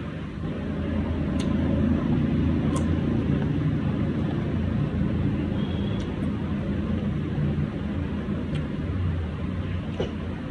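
A steady low engine-like rumble with a low hum, building over the first two seconds and easing slightly later on. A few faint clicks of a knife slicing a guava come through it.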